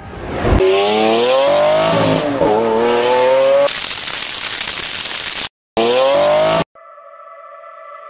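Car engine revving sound effect: the engine note climbs, gives way to a loud rushing hiss, cuts out suddenly, then revs up once more and stops abruptly.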